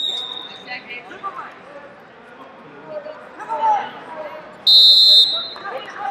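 Wrestling end-of-period signal: one loud high-pitched tone about half a second long, about five seconds in, as the period clock runs out. It sounds over arena voices and shouting from coaches and spectators.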